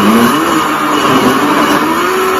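Small electric countertop blender running at full speed, blending chunks of papaya with a little water and sugar. Its motor pitch climbs over the first half second, then holds fairly steady with a slight waver as the load churns.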